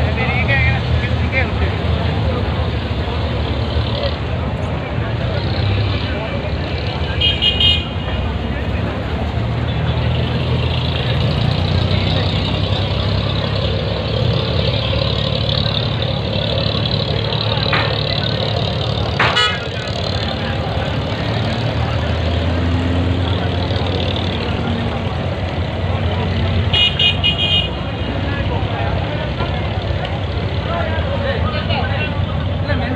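Diesel engines of abra water taxis running, a steady low drone, with two brief high-pitched tones about a quarter of the way in and near the end, and a single sharp click past the middle.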